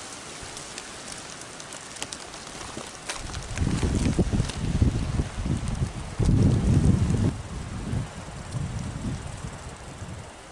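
Wind in a snow-covered forest: a steady hiss through the trees, with gusts buffeting the microphone as low rumbling surges from about three seconds in until near the end.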